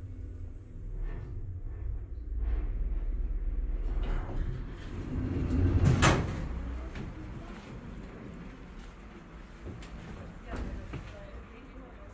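Hydraulic elevator running with a low steady hum as the car comes in, then its automatic sliding doors open, ending in a loud clunk about six seconds in; the hum stops soon after, leaving quieter open-air sound.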